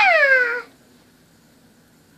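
A girl's high-pitched vocal squeal that falls in pitch and lasts about two-thirds of a second, then faint room quiet.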